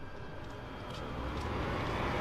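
A car approaching on the street, its road and engine noise growing steadily louder.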